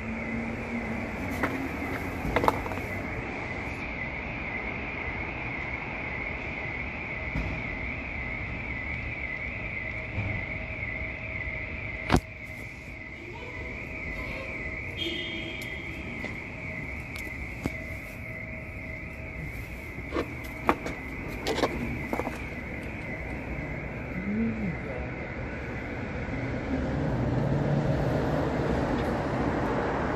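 Steady background noise with a high warbling tone that wavers quickly up and down and stops near the end. There is a sharp knock about twelve seconds in and a few clicks later.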